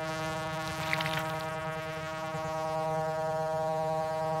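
Synthesized drone: a steady stack of held tones that does not change, with a few faint high glints about a second in.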